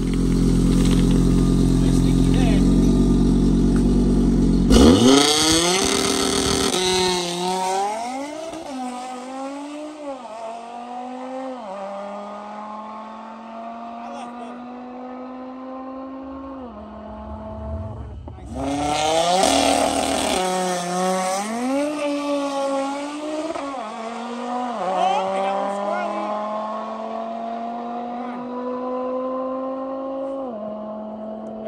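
Audi RS3's turbocharged five-cylinder engine held at high revs on the line, then launching about five seconds in. Its pitch climbs and drops back through a run of quick upshifts as it pulls away and fades down the strip. A second launch with the same run of upshifts follows about 18 seconds in.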